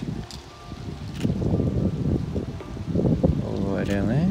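Indistinct talking that starts about a second in, over wind buffeting the microphone.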